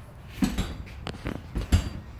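A handful of short, sharp clicks and knocks of hard plastic and metal survey gear being handled, as a data radio is fitted to its bracket on a surveying pole.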